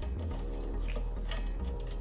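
Hand ratchet turning off a 15 mm wiper arm nut, giving a few scattered clicks, over steady background music.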